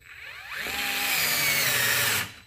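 DeWalt DCF682 8V gyroscopic cordless screwdriver driving a quarter-inch zip screw into OSB. The motor speeds up with a rising whine over the first second, then runs steadily under load as the screw sinks in.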